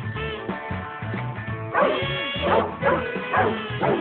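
Basset hound puppy barking and yelping over background music: one longer call about two seconds in, then three short ones in quick succession.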